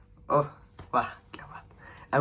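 A man's voice in two short, breathy bursts of a syllable or two each, with quiet gaps between.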